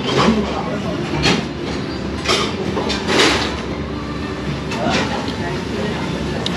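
Restaurant dining-room noise: background chatter over a steady low rumble, with several short scrapes and clinks of a metal fork and knife on a ceramic plate.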